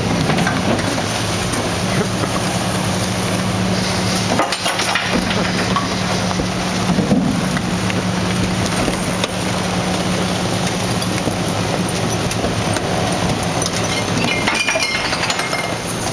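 Rear-loading garbage truck running steadily as its hydraulic packer blade cycles, with trash tipped into the hopper clattering and clinking. The loudest knock comes about seven seconds in, and more clinks follow near the end.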